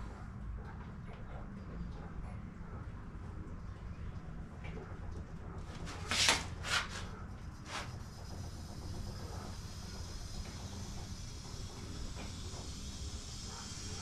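Air-over-hydraulic motorcycle lift being let down under a heavy steel welding cart: a steady low hum, with a few short bursts of noise about six to eight seconds in.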